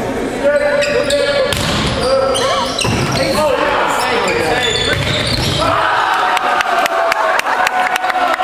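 Volleyball rally in a reverberant gym: sharp smacks of the ball being hit amid players' shouts and calls, then loud shouting as the point ends in the last couple of seconds.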